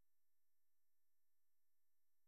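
Near silence: digital silence in a pause of a screen-recording narration.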